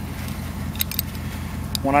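A few light metallic clicks and clinks from a steel EZ dog-proof raccoon trap being handled, about a second in and again near the end, over a steady low rumble.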